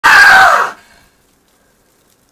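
A man screaming once, very loud and high, for under a second, the pitch sliding down before it breaks off.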